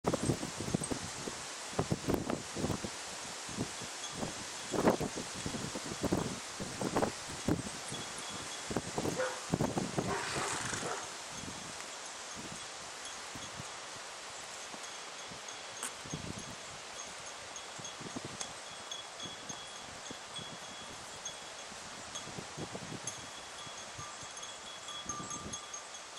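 Wind buffeting the microphone in irregular thumps and rumbles, heavier in the first eleven seconds, over a steady outdoor hiss. Faint thin high tones run through the second half.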